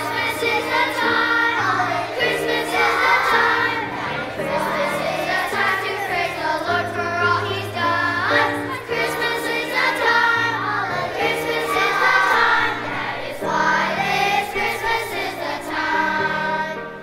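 Children's choir singing together over an instrumental accompaniment with a steady bass line.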